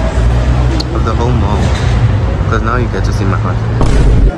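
Steady low rumble of a motor vehicle engine running close by, with voices talking in the background.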